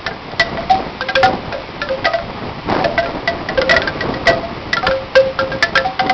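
Bamboo cane wind chime: the hanging tubes knock together irregularly in the wind, a quick, uneven run of short, hollow-pitched clacks, some doubled, over a steady rush of wind on the microphone.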